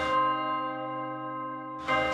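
A church bell ringing on in one sustained tone that slowly fades, with the rest of the music dropped away beneath it.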